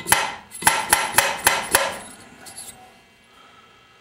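A steel intake valve tapped repeatedly against its freshly re-cut seat in a cast-iron cylinder head: about six sharp metallic clicks in under two seconds, striking the valve on the seat to print where the seat contacts the valve face.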